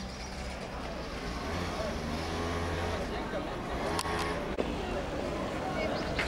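A motor vehicle's engine running close by, its low hum strongest about two seconds in, with people talking around it and two short knocks a little past the middle.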